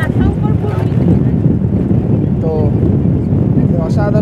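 Wind buffeting the microphone with the rumble of a moving vehicle, loud and steady, with a brief voice about two and a half seconds in.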